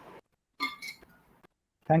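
A short clink with a brief ringing tone about half a second in, then a man begins to speak right at the end.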